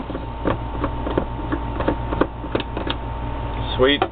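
Handling of vape hardware: irregular small clicks and taps as an atomizer is swapped on a box mod's 510 connector and parts are set down on the tabletop, over a steady low hum.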